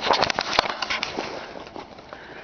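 A quick run of crackling clicks and rustles close to the microphone in the first second, the loudest a sharp click just over half a second in, then a faint steady hiss.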